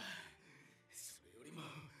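A faint gasp: a short, sharp intake of breath about a second in, against very low background sound.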